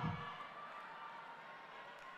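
A pause in a man's amplified speech: his last word fades away at the start, leaving only faint, steady hall ambience.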